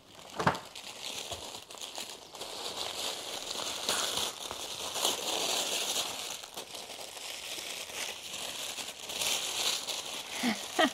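Tissue paper crinkling and rustling as it is pulled away from a small item being unwrapped, with a sharp crackle about half a second in.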